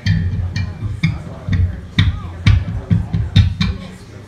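Rock drum kit struck in a loose, uneven run of hits, roughly two a second, with bass guitar underneath: a live band noodling between songs rather than playing a tune.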